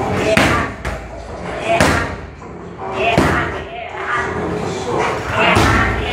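Kicks and punches landing on Thai pads: a series of sharp smacks at irregular intervals, roughly one a second, with shouts or sharp exhales from the fighters between the strikes.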